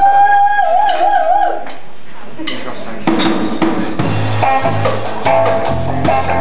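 A singer's long held note that swoops up into pitch and then wavers, followed by a live reggae band starting up: drum kit strokes first, then bass and keyboard chords coming in about four seconds in.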